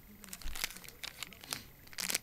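Clear plastic bag around a DVI-to-VGA adapter crinkling as it is handled, a run of irregular crackles with a soft low knock about half a second in.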